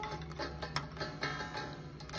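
Tremolo springs in the back cavity of a 1963 Fender Stratocaster being touched and plucked by fingers, giving a string of irregular light metallic ticks with faint ringing, carried through the guitar's pickups.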